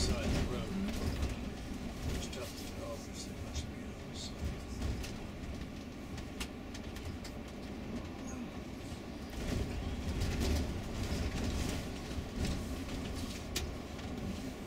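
Inside a tour bus cabin, a steady low engine and road rumble as the coach drives along, with scattered light rattles and clicks. Voices talking indistinctly can be heard underneath.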